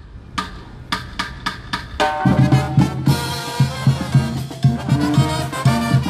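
Tamborazo band starting a song live: a run of evenly spaced drum strokes, about three a second, then the full brass section comes in over the bass drum about two seconds in.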